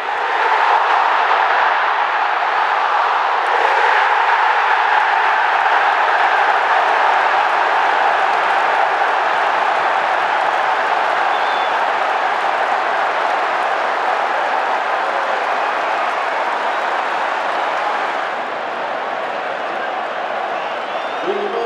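Large football stadium crowd cheering and applauding a home goal. The noise jumps up about half a second in, holds steady, and eases a little near the end.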